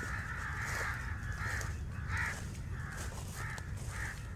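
Crows cawing, a few separate calls spread through, over a low steady background hum.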